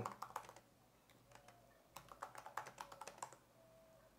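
Faint typing on a computer keyboard: a few clicks just after the start, then a quick run of about a dozen keystrokes from about two seconds in to a little past three.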